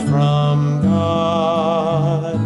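A man singing long sustained notes with a wavering vibrato over strummed acoustic guitar chords; the guitar's chord changes about a second in.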